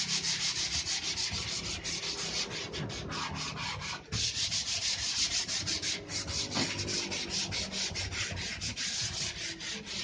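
Sandpaper rubbed by hand over a bare wooden door panel in quick back-and-forth strokes, with a brief pause about four seconds in.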